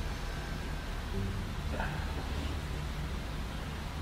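Steady low room hum and background noise, with no distinct event.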